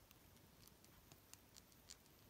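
Near silence with a few faint clicks and light scratching as fingers handle a plastic figma action figure and its sword; the sharpest click comes near the end.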